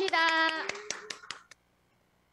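A woman's voice drawing out the end of a word, then a short run of about five quick hand claps, one every fifth of a second.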